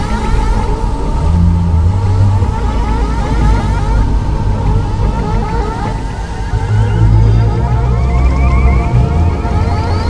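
Electronic music: a fast stream of short, repeating rising synth sweeps over a steady high tone and a heavy bass drone that swells and fades.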